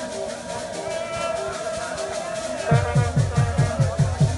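A group singing with rhythmic percussion. About three-quarters of the way through, deep drum beats start at roughly four a second.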